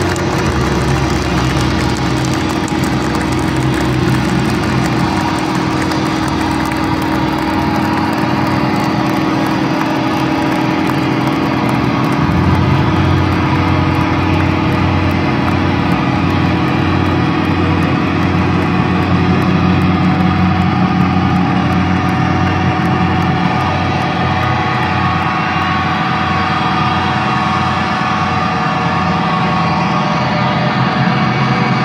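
Loud, sustained droning noise from a metal band's amplified instruments as a live song winds out, a steady low hum with no beat that thickens partway through.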